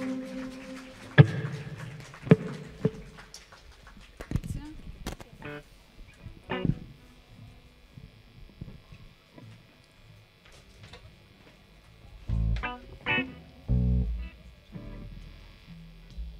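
Electric guitar and bass guitar on a live stage, played sparsely and quietly: a chord rings and fades over the first second or so, then scattered single notes follow, with a few louder low bass notes near the end.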